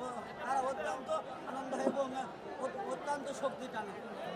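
A crowd of men chattering at once, many overlapping voices with no single speaker standing out.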